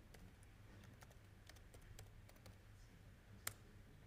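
Faint typing on a laptop keyboard: scattered soft key clicks, with one sharper click about three and a half seconds in, over a low steady room hum.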